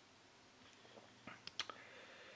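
Near silence, with a few faint mouth clicks and a breath from the speaker about a second and a half in.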